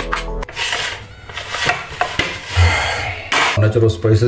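Kitchen knife cutting and scraping through diced tomatoes on a plastic cutting board: rubbing scrapes of the blade with a few sharp knocks on the board. Background music cuts off about half a second in.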